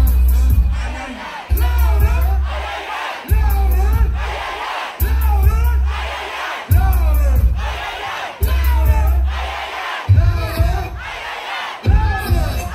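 Crowd at a live hip-hop concert shouting the lyrics along over a loud trap beat, with a deep bass hit about every 1.7 seconds.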